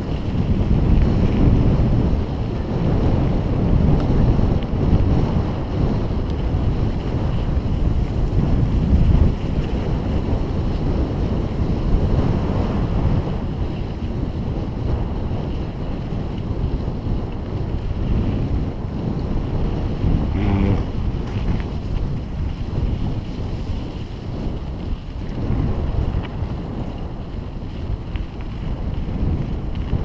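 Wind buffeting the microphone of a bicycle-mounted camera while riding, mixed with the bicycle's tyres rolling over a loose gravel track; a steady, rough rumble that rises and falls with the gusts.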